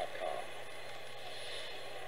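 Sangean PR-D6 portable radio's speaker giving steady AM-band static while its dial is tuned between stations, with a brief fragment of a broadcast voice just after the start.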